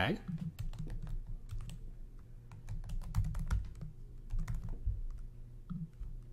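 Typing on a computer keyboard: a run of irregular keystrokes as a name is entered into a text field.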